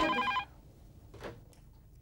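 Corded landline telephone ringing, a steady multi-tone electronic ring that cuts off about half a second in as the call is answered. A faint click follows about a second later.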